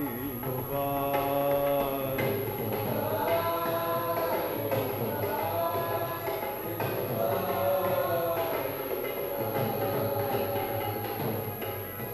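Live Hindi devotional song (pad kirtan): a singer holds long, gently bending notes over steady drum beats.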